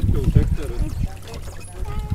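People's voices over water splashing and trickling as a dense crowd of farmed fish churns at the surface.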